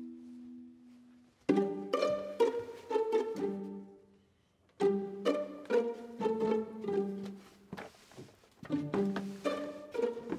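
Light background music of plucked (pizzicato) strings, played in short bouncy runs of quick notes. It starts about a second and a half in, pauses briefly near the middle and picks up again twice.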